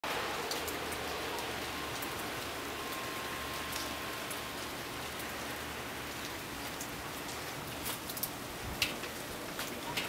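Steady hiss and patter of wet snow mixed with rain falling, with scattered drip ticks. A single thump comes near the end.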